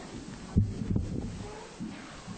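Two dull low thuds, a sharp one about half a second in and a softer one just before a second in, over a low hum.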